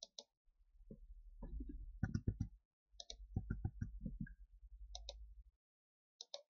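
Computer mouse button clicking, each click a quick double snap of press and release, heard at the start, about three seconds in and about five seconds in. In between comes a run of duller, rapid taps over a low rumble.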